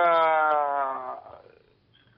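A man's long drawn-out hesitation sound, 'eeeh', falling slowly in pitch for about a second and then trailing off.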